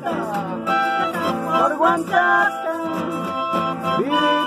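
A chacarera played live on a strummed nylon-string classical guitar and a button accordion, with held accordion chords over the guitar's rhythm.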